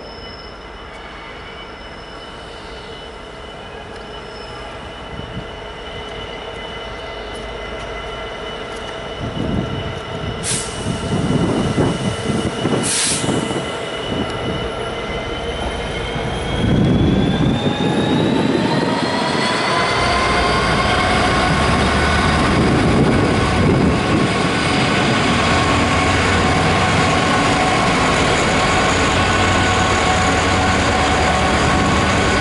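Freightliner Class 66 diesel locomotive, with its two-stroke V12 engine, approaching at the head of a container train and growing steadily louder. Its engine note rises in pitch a little past halfway as it powers up, and two short high squeals come from the wheels shortly before.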